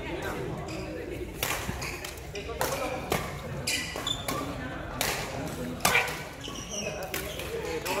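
Badminton rackets striking a shuttlecock in a rally: about six sharp hits, unevenly spaced about half a second to two seconds apart.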